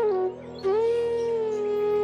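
Relaxing background music: a flute melody steps down to a low note, breaks briefly, then sustains one long, steady low note over a constant soft drone.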